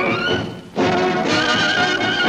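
Orchestral title music from an old film soundtrack. A rising phrase fades into a brief lull just before the middle, then the full orchestra comes back in with a high, wavering held note.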